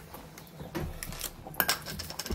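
Faint sizzle of cream and beef strips in a hot frying pan, with a few light clicks and clinks of kitchen handling, most of them near the end.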